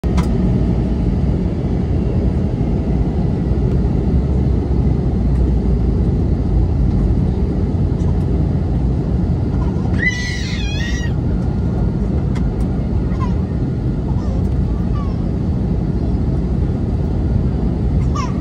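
Steady cabin noise of an Airbus A321neo airliner in flight, a loud low rumble of engines and airflow heard from inside the cabin at a window seat. A brief high-pitched voice cuts in about ten seconds in.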